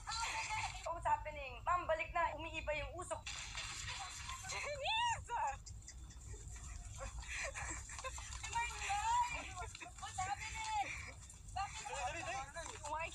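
Excited voices calling out over background music, heard through a television speaker.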